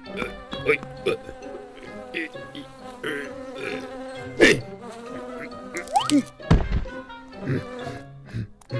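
Cartoon buzzing of bees around a hive over light background music. A quick rising glide comes just before a heavy thump near the end.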